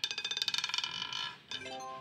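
Roulette ball clattering quickly over the wheel's pockets and coming to rest, a fast run of ringing clicks that dies away about a second and a half in. Near the end a short rising chime of stepped tones sounds as the win comes up.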